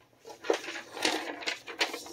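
A sheet of packing paper rustling as it is picked up and handled, in a few short crinkles.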